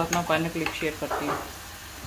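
Potato fries deep-frying in hot oil in a wok: a steady bubbling sizzle.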